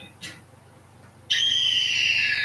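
A high, steady whistle-like tone from a television commercial, starting after about a second of near quiet and held for over a second, dropping slightly in pitch as it ends. It is the sound that the ad then calls "the sound of justice".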